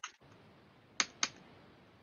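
Two short, sharp clicks a quarter second apart, about a second in, in an otherwise quiet pause.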